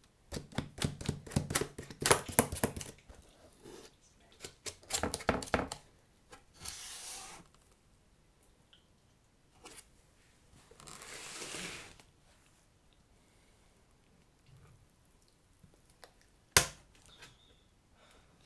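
Gloved fingertips tapping rapidly on a cardboard box in quick runs of clicks, then two longer tearing rustles as the box's flaps are pulled open. One sharp knock on the cardboard near the end is the loudest sound.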